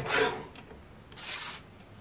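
Paper sliding and rustling on a lever-arm guillotine paper cutter as the sheet is handled, with a short papery swish about a second in.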